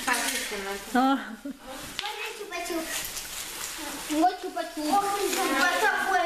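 Children's voices chattering and exclaiming over the crinkling and rustling of plastic candy wrappers as hands dig through a pile of sweets.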